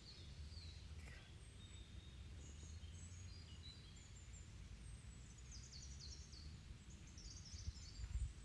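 Very quiet outdoor ambience: birds chirping faintly in short, high notes, busier near the end, over a low rumble.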